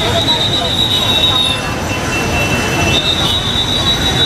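Steady rushing of the flooded Narayani river, with a high-pitched steady whine over it that drops out for about a second in the middle.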